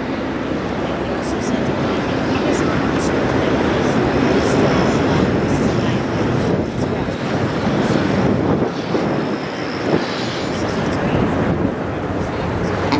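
Steady rumbling outdoor noise with indistinct voices mixed in.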